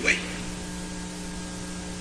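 Steady electrical hum with faint hiss: a low, unchanging tone with a few higher overtones, heard once a man's voice stops just after the start.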